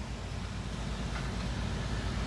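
Steady low rumble of wind buffeting the microphone outdoors, with no distinct event standing out.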